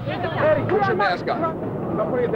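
Several people's voices talking and calling over one another amid street noise, with music fading out at the start.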